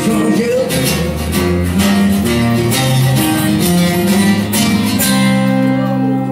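Acoustic guitars strumming chords together in a live acoustic rock performance, with a steady rhythm of strokes.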